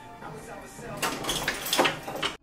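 A duffel bag being pushed into a locker: rustling and knocking against the locker, starting about a second in and loudest near the end.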